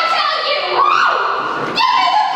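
High voice held on long sliding notes, rising to a peak about a second in and falling away again.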